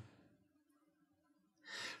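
Near silence, then a faint in-breath near the end as the narrator draws breath to speak.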